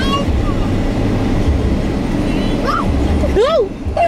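Low steady rumble of a car heard from inside the cabin, with a short rising-and-falling call from a person's voice near the end.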